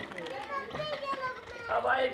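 Children's voices talking and calling, not close to the microphone.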